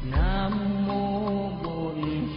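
Background music: a held melody line that bends up in pitch at the start, over a light tick about three times a second and a low drum stroke just after the start.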